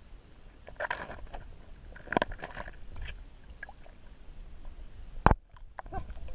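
Muffled water movement against a camera held underwater, a low rumble broken by a few sharp knocks, the loudest about five seconds in.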